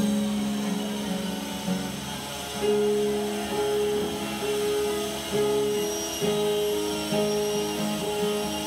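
Instrumental worship music on keyboard and acoustic guitar: steady held chords and notes, moving to a new one about once a second.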